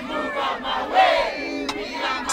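Crowd of partygoers shouting together in long, drawn-out calls, with the bass beat of the music dropped out beneath them.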